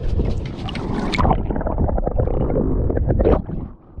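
Low, uneven rumble of wind and handling noise on a handheld action camera's microphone, dropping away sharply near the end.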